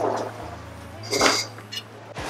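Knife and fork working on a ceramic plate as food is cut. About a second in comes a short, high squeal that lasts about half a second.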